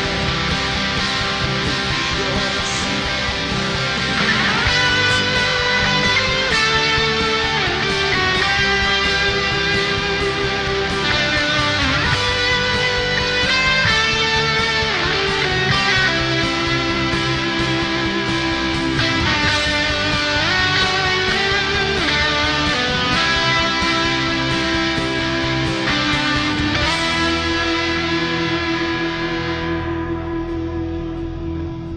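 Electric guitar lead solo over a full rock band backing track, a melodic line of held notes with pitch bends.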